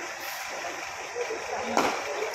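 Indistinct voices in an echoing indoor cricket net hall, with one sharp knock near the end.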